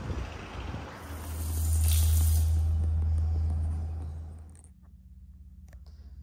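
A car driving past on the road: a low rumble with tyre hiss that swells to a peak about two seconds in and fades away over the next couple of seconds. Near the end the sound drops suddenly to a faint low hum.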